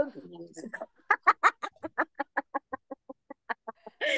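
A woman's deliberate laughter-yoga laughing, a fast staccato run of short 'ha' pulses, about eight a second, trailing off quieter over nearly three seconds, done as a mimed mouth-rinse.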